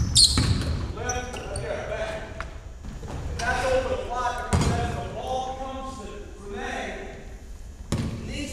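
A basketball bouncing on a hardwood gym floor, a few separate thuds, with voices talking over it in the echo of a large gym.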